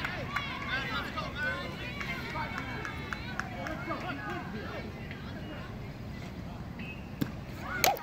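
Spectators talking in the background, then near the end a sharp crack of a bat hitting a pitched baseball.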